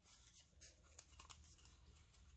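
Near silence, with a few faint ticks and rustles of cardstock being handled and pressed down by fingers, clustered a little past the middle.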